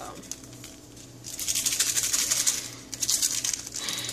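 Granulated sugar being shaken out of paper sugar packets into a cup of coffee: a gritty rustling pour that starts about a second in and lasts about two and a half seconds.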